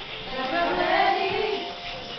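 Women's voices singing a song together, with wavering held notes.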